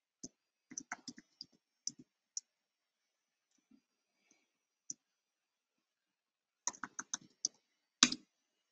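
Faint keystrokes on a computer keyboard: a quick run of typing near the start, a few single keys in the middle, and another quick run near the end.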